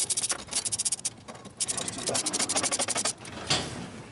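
Hand ratchet clicking rapidly as it tightens the bolts of a reverse bucket bracket plate: two quick runs of clicks with a short break about a second in.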